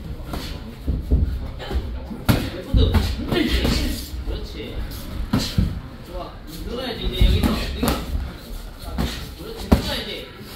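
Boxing gloves landing punches during a sparring round: sharp smacks and thuds at irregular intervals, the sharpest near the end, with shoes shuffling on the ring canvas.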